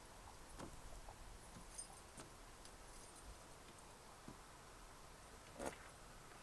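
Near silence with a few faint footsteps and small clicks, and one sharper click near the end.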